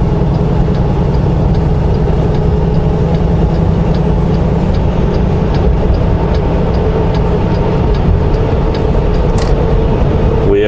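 Semi truck's diesel engine and tyre noise heard from inside the cab while cruising at highway speed: a steady drone with faint, evenly spaced ticks.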